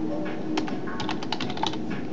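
Typing on a computer keyboard: a quick run of keystroke clicks starting about half a second in, over a faint steady low hum.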